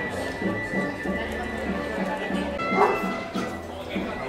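Procession band music: sustained held notes over a regular low beat, with people talking underneath. A short, sharper cry stands out over the music near the end.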